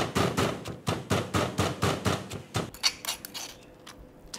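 Pestle pounding in a mortar, rapid even knocks several a second, crushing chillies, shallots and dried shrimp into a coarse spice paste. The pounding stops about two and a half seconds in, followed by a few lighter clicks.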